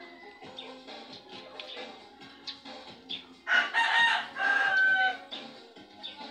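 A rooster crowing once, loud and drawn out for a little under two seconds, starting about three and a half seconds in, over faint background music.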